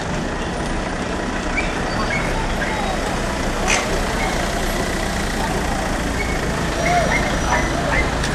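Steady low rumble of street noise with faint, scattered voices, and one sharp click about four seconds in.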